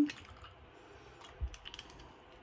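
Faint small clicks and taps, with a soft knock about one and a half seconds in, from alcohol ink bottles and a brush being handled while colours are mixed.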